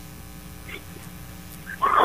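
Quiet studio room tone with a faint steady hum during a pause in conversation; a person's voice starts to answer near the end.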